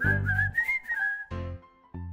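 Light background music: a high whistled melody wavering up and down over low bass notes for about the first second, then short separate notes.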